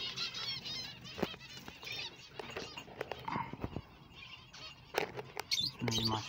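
Small aviary finches chirping in quick high calls, thickest in the first second or two and again near the end. A few sharp knocks and clicks come as the clay-pot nest and wire mesh are handled.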